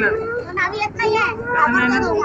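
High-pitched raised voices crying out and shouting in distress, with no clear sound of blows.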